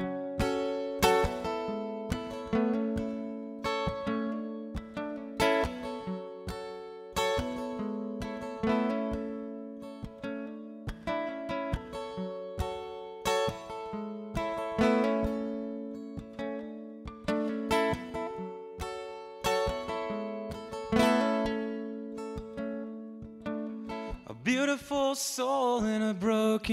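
Cort acoustic guitar playing a slow picked intro, one note or chord about every second, each left to ring over the next. A singing voice comes in near the end.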